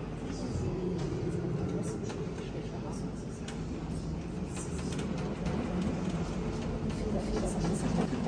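Indistinct conversation of several people, voices murmuring in a large church.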